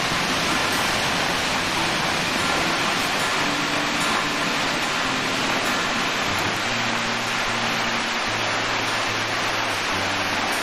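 Waterfall water falling and splashing onto rocks, a steady rush. Low steady tones come in over it about six and a half seconds in.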